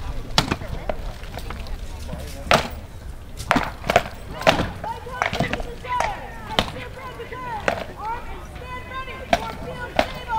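Sword blows cracking against shields and helmets in armoured combat: about a dozen sharp strikes at an irregular pace, some in quick pairs.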